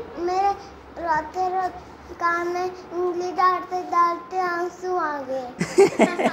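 A young girl singing a short sing-song tune, a string of short held notes on nearly level pitch, with a brief louder burst of voice near the end.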